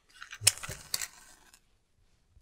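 A wooden match struck on the side of a matchbox: a short scratchy rasp with two sharp strikes, about half a second and a second in.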